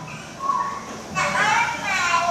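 Young children's high-pitched voices, speaking and calling out, played back from a video over the room's loudspeakers: a short utterance about half a second in, then a longer one rising in pitch in the second half.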